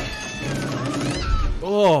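Horror film soundtrack playing back: a dense low rumbling noise with thin, high, wavering pitched tones gliding over it. A man's voice cuts in near the end.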